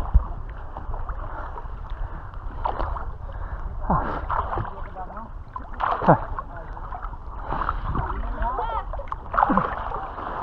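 Sea water lapping and splashing right at the microphone as a swimmer does breaststroke at the surface, over a steady low rumble of water moving past the mic. People's voices call out a few times, their pitch falling.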